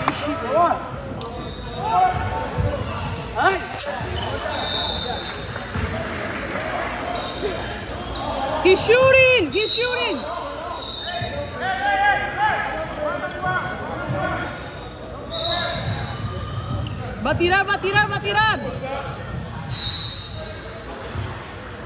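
A basketball bouncing on a hardwood gym floor during play, in a large echoing hall, with short high squeaks in two clusters, about nine seconds in and near the end.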